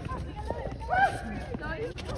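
Voices of people calling out at a distance, with short shouts over a low outdoor background rumble.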